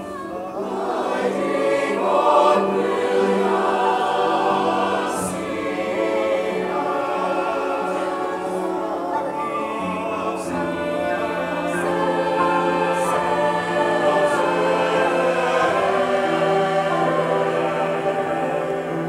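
Mixed choir singing in full chords with piano accompaniment, growing louder over the first two seconds, with several crisp 's' consonants sung together.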